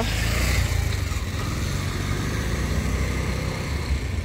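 A Hyundai Verna's 1.5-litre turbo-petrol engine idling steadily after being started remotely from the key fob, heard from outside the car.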